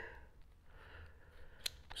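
Faint handling of small plastic parts and packaging, with two sharp clicks near the end.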